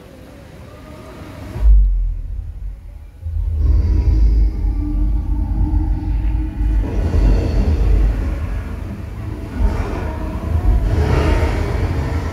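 Show soundtrack playing over loudspeakers: a sudden deep boom about two seconds in, then from about three and a half seconds a sustained bass rumble under music.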